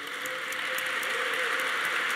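Audience applause, a dense patter of clapping that slowly swells.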